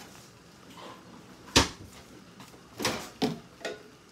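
Kitchen handling out of view: a sharp click about one and a half seconds in, then three softer knocks near the end, as of a cupboard or appliance door being opened and shut.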